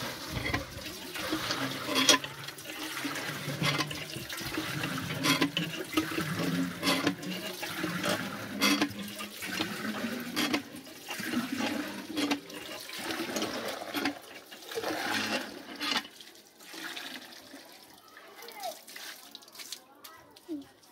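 Cast-iron hand pump being worked, water gushing from its spout into a metal pot, with a knock from the pump stroke about every one and a half to two seconds. The pumping dies down after about three-quarters of the way through.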